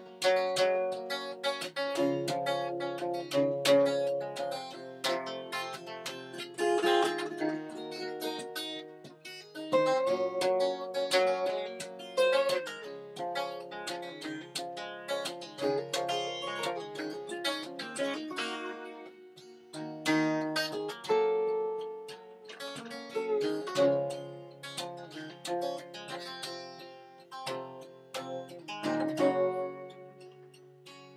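Acoustic guitar playing an instrumental break of a folk song, with picked notes and chords ringing out and no singing.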